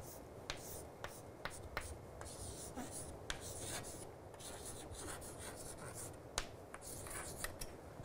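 Chalk writing on a chalkboard, faint: sharp taps as the chalk meets the board and scratchy strokes between them.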